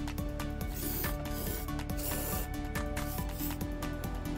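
Background music with a steady beat, over which an aerosol insecticide spray can hisses in short bursts, about one and two seconds in, as it is sprayed into a gap at the base of a wall.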